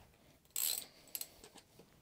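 A short metallic scrape about half a second in, then a few light clicks: a spark plug socket on an extension bar being worked in the plug well of a Ford Sigma engine.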